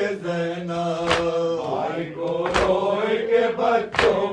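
A man chanting an Urdu noha (Shia lament) in long held, drawn-out notes, with a sharp slap about every one and a half seconds in time with the chant, the beat of matam (chest-beating).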